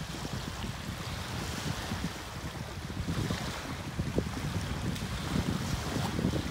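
Small lake waves washing onto a pebble shoreline, with wind blowing on the microphone.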